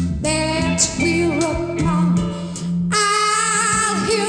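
A female singer singing theatrical rock with a live band, bass and guitar under her voice. About three seconds in the bass drops away under a long held, wavering note.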